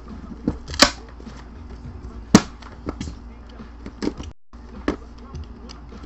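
Sharp clicks and knocks of a trading-card box and hard plastic card cases being handled and set down, half a dozen separate taps with the loudest about two and a half seconds in, over a low steady hum.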